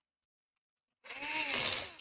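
Electric screwdriver running for about a second, starting about a second in, its motor whine rising and then falling as it drives a screw into the laptop's bottom cover.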